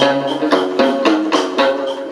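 Chầu văn ritual music: a plucked lute melody over a regular beat of wooden clapper strikes.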